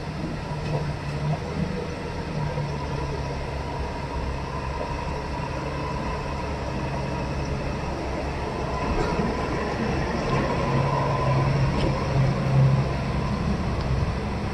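Heavy diesel engines of trucks crawling past and an excavator close by, running with a steady low rumble that grows louder in the second half.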